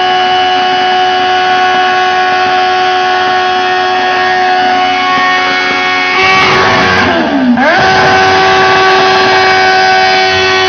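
A stationary motorcycle engine revved hard and held at a steady, high pitch, being deliberately over-revved to wreck it. About six seconds in, the revs fall away sharply and then climb straight back to the same high pitch.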